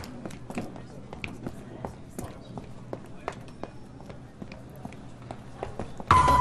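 Footsteps on a hard floor, including high-heeled shoes: irregular sharp clicks from several people walking, a few a second, over a faint low hum.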